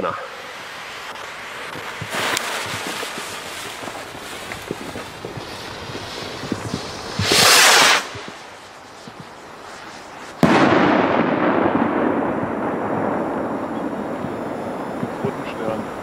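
A Zink 901 firework rocket from Poland: its lit fuse hisses for several seconds. About seven seconds in the rocket launches with a short loud whoosh, and about three seconds later it bursts with a sudden loud bang whose tail fades over the last few seconds.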